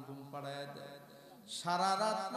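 A man's voice chanting a supplication (dua) in long, drawn-out melodic phrases into a microphone. It dips softer in the middle and swells louder about one and a half seconds in.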